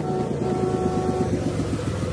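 Cartoon sound effect of a bus pulling up: an engine running with a rapid, even chugging, and a steady horn tone that stops a little over a second in.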